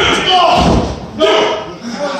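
Spectators talking and shouting, with a heavy thud on the wrestling ring's canvas about half a second in.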